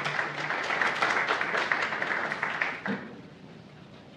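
Audience applauding at the end of a talk, dying away about three seconds in.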